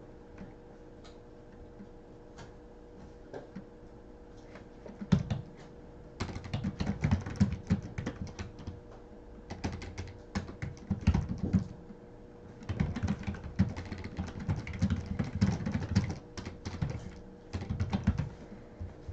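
Typing on a computer keyboard: a few scattered keystrokes at first, then fast runs of key clicks from about five seconds in, broken by short pauses.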